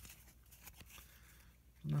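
Faint rustling and a few light ticks of cardboard baseball cards being slid off a stack in the hand, one card after another.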